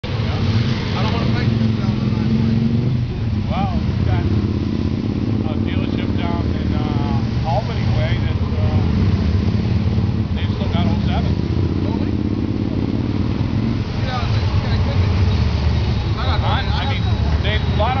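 Can-Am Spyder three-wheeled roadsters and motorcycles riding past one after another at low speed. Their engines run with a low note that shifts every few seconds as each machine goes by.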